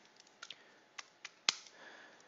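A handful of short, sharp clicks and taps at a computer desk, about six over a second and a half. The loudest is a firmer knock near the middle, followed by a brief soft scraping rustle.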